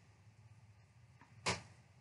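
Quiet room tone with a single short, sharp handling sound about one and a half seconds in, as a large piece of embroidered cross-stitch fabric is unfolded and lifted.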